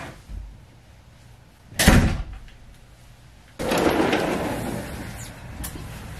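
A door shutting with one heavy thump about two seconds in. A little past halfway, a steady rushing noise starts suddenly and slowly eases off.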